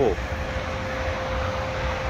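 Steady low rumble of passing road traffic, with a faint steady hum.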